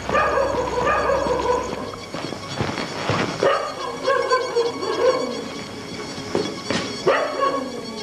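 A dog giving several drawn-out cries in a row, each lasting about a second, with a few sharp knocks in between.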